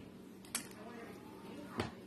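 Pieces of biscuit dough dropped by hand into a stainless steel mixing bowl: two short knocks about a second apart, over a faint steady hum.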